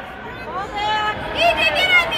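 Children's high-pitched voices shouting and calling over crowd chatter in a large gym, getting louder in the second half.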